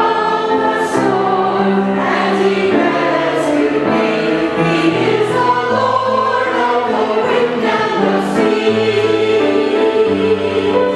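Mixed church choir of men's and women's voices singing in harmony, with held chords moving to new notes every second or so.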